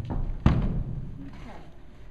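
A horse's hoof stepping onto a horse trailer's floor: one heavy thud about half a second in, dying away.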